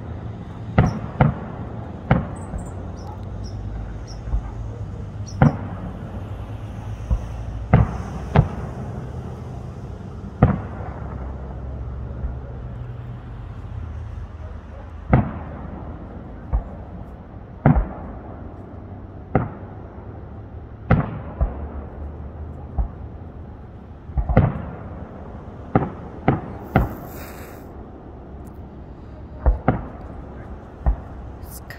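Aerial fireworks shells bursting, a long series of sharp bangs at irregular intervals, a few seconds apart, with a quick flurry of them near the end.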